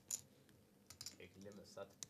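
Poker chips clicking at the table as they are handled: a few scattered, light clicks, with faint murmured speech.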